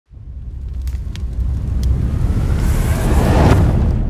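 Cinematic logo-intro sound effect: a deep rumble swells up, with a few faint ticks, and a rising whoosh builds into a sharp hit about three and a half seconds in.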